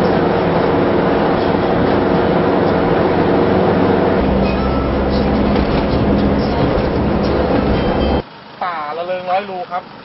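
Steady engine and tyre noise inside a moving car, with a deeper rumble from about four seconds in. It cuts off abruptly about eight seconds in, and a man starts speaking.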